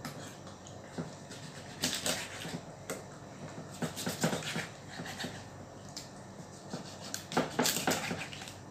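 Kitchen knife cutting raw chicken thighs on a thick wooden chopping board: a few irregular knocks of the blade against the wood with quiet handling of the meat between, the loudest knocks near the end.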